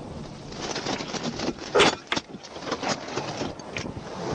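A string of sharp knocks and rustles close to the microphone, the loudest about two seconds in, over a low steady traffic hum.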